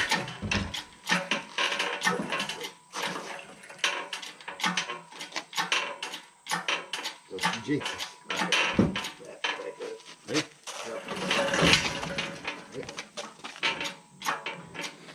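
Hydraulic engine hoist being worked to lift the engine and transmission out of a 1968 Dodge Charger: irregular metallic clicks, clanks and rattles from the hoist, chain and engine.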